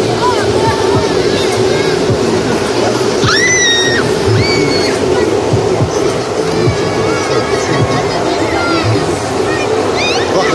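A foam cannon sprays foam with a continuous rushing hiss over a crowd of children shouting and squealing, with a few high drawn-out shouts. Music plays underneath.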